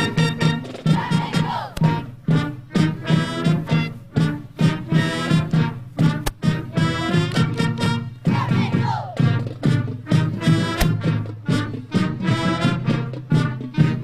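High school marching band playing an upbeat brass tune, with sousaphones and a steady beat about twice a second.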